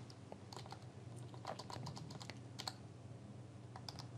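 Faint typing on a computer keyboard: scattered light clicks, several in quick runs.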